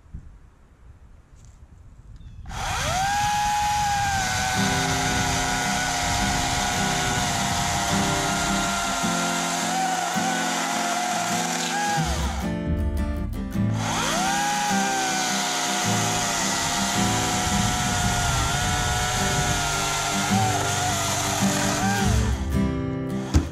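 Oregon CS300 battery chainsaw's electric motor spinning up to a steady high whine as it cuts a log. It stops briefly about halfway through, then spins up again. Background music plays underneath.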